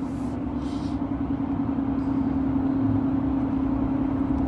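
Steady car cabin noise: a low rumble of road and engine with a constant hum, heard from inside a car. Two brief soft hisses come in the first second.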